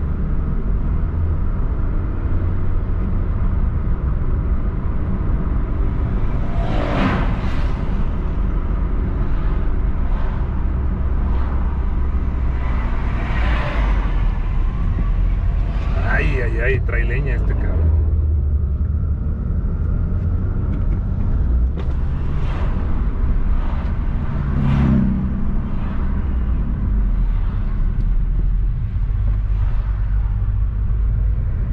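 Steady low road and engine rumble inside a moving car, with oncoming vehicles rushing past several times, the most prominent about 16 s in when a truck passes.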